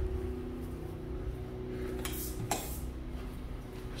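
A steady low machine hum, with a brief clatter about two seconds in and another about half a second later.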